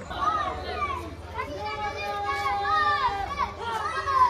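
Several children shouting and calling out together in high voices, their calls overlapping.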